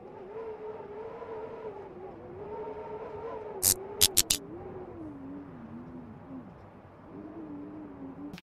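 Intro-animation sound effects: a wavering hum that sinks slowly in pitch, with a quick run of four sharp clicks about halfway through, as when the subscribe button is clicked.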